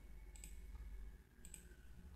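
Two faint computer mouse clicks about a second apart, over near-silent room tone.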